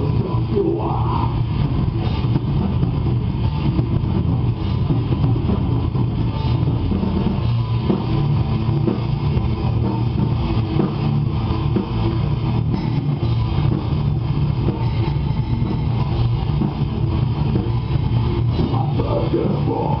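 Heavy metal band playing live, with electric guitar and bass guitar. The music is continuous and holds an even level with no break.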